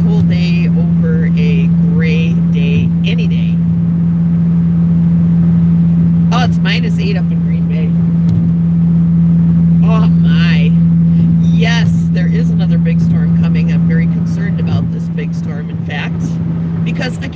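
Steady low drone of a car's cabin while driving, a constant hum of engine and road noise.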